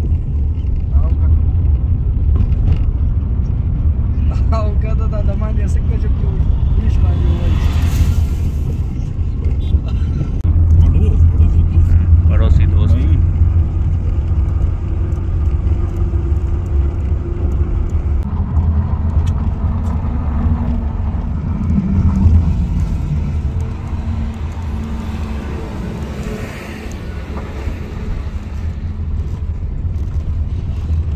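Car cabin noise while driving: a steady low engine and road rumble, with a brief louder rush about eight seconds in and low voices talking at times.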